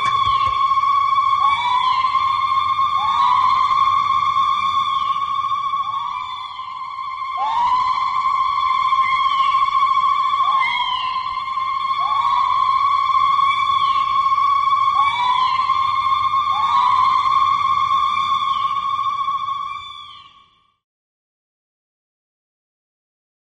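Electronic synthesizer tone held on one high pitch, with a swooping slide up into the note repeating about every second and a half. It fades out about twenty seconds in, leaving silence.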